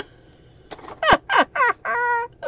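A woman laughing in a run of short, high cries that fall in pitch, with a sharp click about a second in.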